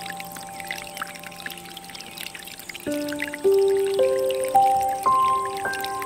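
Water trickling from a bamboo spout into a stone basin under soft music. About halfway in, a slow rising run of ringing, held notes begins and becomes louder than the water.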